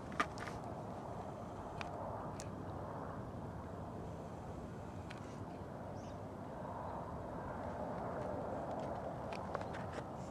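Faint, steady wind rumble on the microphone, with a few faint clicks.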